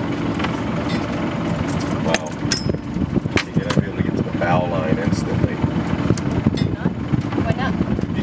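Sailboat's inboard diesel engine running steadily, with scattered sharp clicks and faint voices over it.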